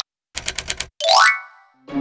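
Cartoon sound effects: a quick run of about seven keyboard-typing clicks, then a rising, ringing glide that fades away.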